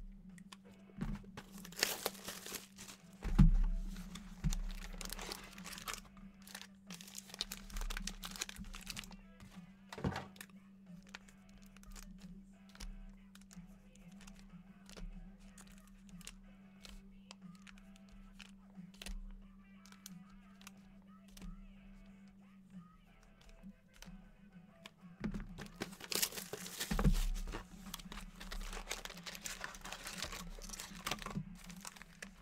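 Trading-card pack wrappers crinkling and rustling as sealed packs are handled one after another, with the loudest bursts near the start and again near the end. Quiet background music and a steady low hum run underneath.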